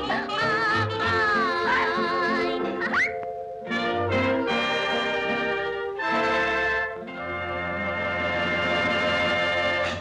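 Orchestral cartoon music with brass. A wavering melody line plays for about three seconds, then closing chords follow, ending on a long held final chord from about seven seconds in.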